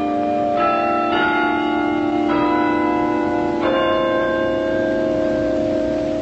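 Bells playing a slow tune, a new note struck every second or so, each ringing on under the next.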